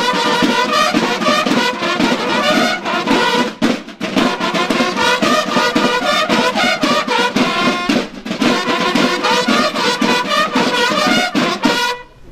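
Brass band music, trumpets and trombones over a steady drum beat, playing a lively tune that breaks off suddenly at the end.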